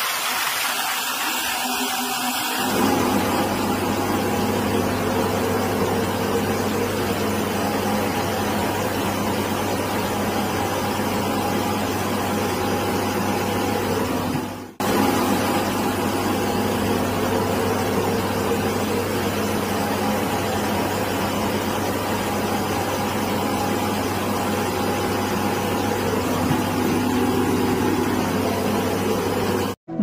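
A helicopter's engines running steadily close by and inside the cabin: a loud, even drone with a low hum. The low hum comes in about three seconds in, and the sound breaks off for an instant halfway through.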